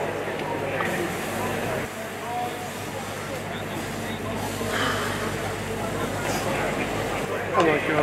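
Venison sizzling in a frying pan on a gas stove, under the chatter of people nearby and a steady low hum.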